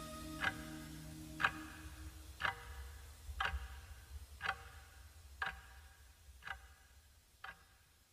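A clock ticking once a second, slowly fading out, while the last held notes of the song die away in the first two seconds or so.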